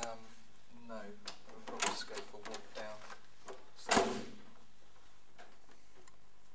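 A brief voice sound near the start, then a few light knocks and clicks and one loud sharp thump just before four seconds in, like household handling of a door or drawer.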